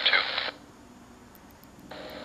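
Air traffic control radio: a controller's transmission ends and the squelch cuts it off sharply about half a second in. Then faint hiss with a few soft clicks, and near the end the next transmission keys on as a burst of steady radio noise with no words yet.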